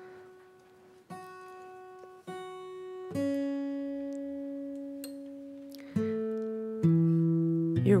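Acoustic guitar being tuned: single strings plucked one at a time and left to ring, about five notes at shifting pitches, growing louder toward the end.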